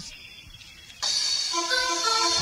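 A makina DJ mix cutting back in after about a second's near-quiet gap: a sudden burst of high hiss, then a run of short, clipped synth stabs leading into the beat.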